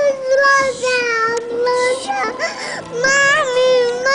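A high-pitched voice holding long, steady wails or notes at nearly the same pitch, in phrases of about a second with brief breaks.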